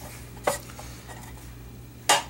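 A single sharp metal click about half a second in as the amplifier's metal case and cover are handled, over a low steady hum.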